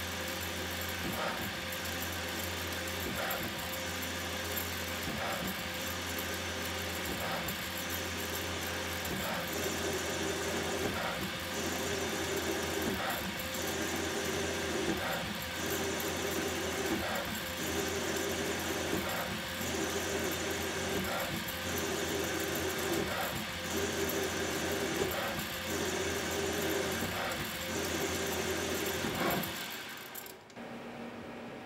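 CNC-converted South Bend SB1001 lathe running a multi-pass threading cycle: steady spindle and motor hum, with the pass cycle repeating about every two seconds. From about ten seconds in, each pass adds a louder cutting sound of about a second and a half as the threading tool takes chips from the bar, broken by short gaps as the tool withdraws and returns.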